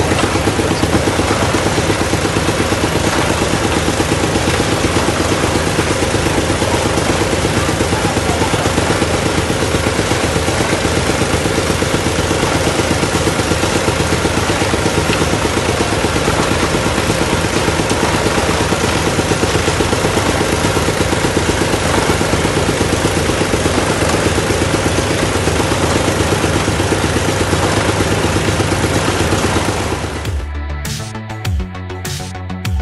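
Engine of a small borehole drilling rig running steadily at constant speed with a fast, even beat, as the rig drills out sand.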